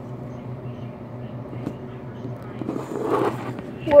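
A plastic Nerf blaster handled close to the microphone, with a small click and a soft rustle that swells about three seconds in, over a steady low hum.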